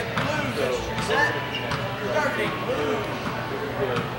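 Indistinct voices talking in a large, echoing indoor sports hall, with a few faint knocks among them.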